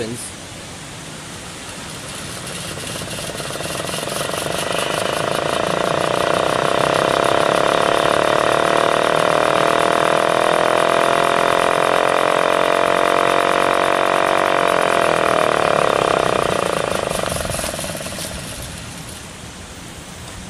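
Restored 1926 Federal type 2 siren running on a 12-volt battery: its tone swells over about six seconds as the rotor spins up, holds steady, then fades away as it winds down near the end. The rewound motor spins on 12 volts DC though not on 120 volts AC, which the owner takes as a sign that it was wired for direct current.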